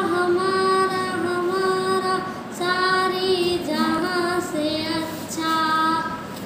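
A girl singing solo in long held notes with a slight waver, in several phrases with short breaths between them.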